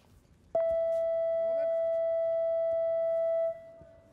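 Electronic time-up buzzer of a judo match: one steady, even tone about three seconds long that starts suddenly about half a second in and cuts off near the end. It marks the end of the match's regular time, with the fighters breaking apart.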